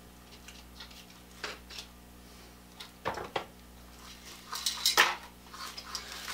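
A few light metallic clinks and knocks as a small rotisserie motor is pulled from its thin sheet-metal housing, with single knocks about one and a half seconds in, around three seconds in, and a small cluster near five seconds.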